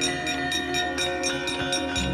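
Javanese gamelan ensemble playing, with sustained ringing metallophone tones over an even, fast beat of struck notes.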